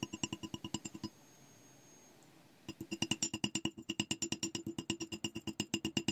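Small hammer tapping rapidly on 20-gauge wire laid on a metal block, flattening it. The strikes are quick and light, about eight a second, each with a short metallic ring. A run of about a second is followed by a pause, then a longer run of taps.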